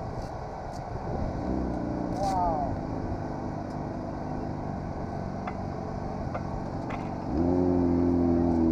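An engine running steadily at idle. About seven seconds in, a louder engine note starts close by and holds steady.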